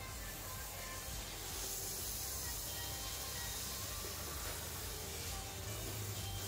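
Water spraying from a salon handheld shower head onto hair and into the basin: a steady hiss that grows louder about a second and a half in and eases near the end. Soft background music plays underneath.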